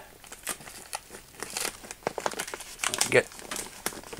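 Plastic poly vapour barrier sheet crinkling and crackling under the hands as tape is pressed along a window jamb to seal the poly to the frame, an irregular run of short rustles and crackles.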